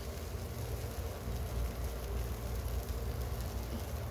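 Flatbread with egg frying in a nonstick pan: a gentle, steady sizzle over a low rumble.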